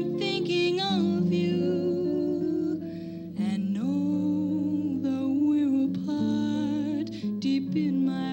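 A slow, gentle song: a woman's voice holds long notes over acoustic guitar and a sustained low accompaniment.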